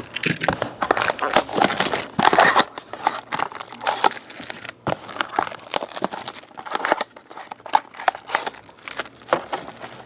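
Cardboard card mini-box being opened and silver foil-wrapped card packs handled, with irregular crinkling and tearing of the packaging.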